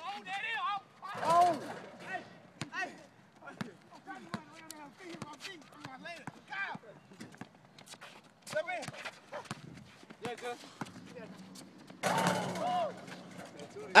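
Voices of players calling out across an outdoor court, mixed with scattered sharp knocks from a basketball bouncing on concrete. A louder burst of voices comes about twelve seconds in.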